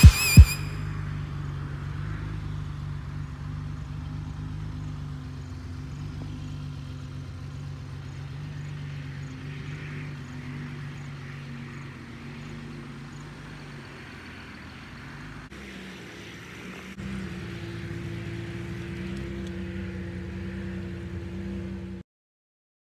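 1969 Mercedes-Benz 280 SEL's straight-six engine idling steadily. A little over two-thirds of the way through the sound breaks off briefly and resumes as a steadier, slightly higher hum.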